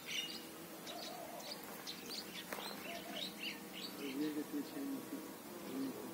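Small birds chirping in quick, short high notes throughout, with a few fainter, lower sounds that waver in pitch underneath.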